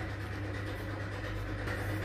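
Steady low hum with an even background hiss and no other events: the room's constant background noise.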